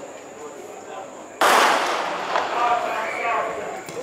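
Starter's pistol fired once about a second and a half in to start a 400 m race: a single sharp bang with a long fading tail.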